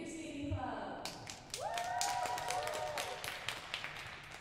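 Spectators clapping, starting about a second in, with one drawn-out vocal cheer over the clapping.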